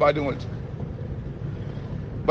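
A man's voice trails off about half a second in, then a pause in which only a steady low background hum is heard.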